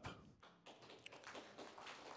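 Near silence: faint room noise with a few light taps.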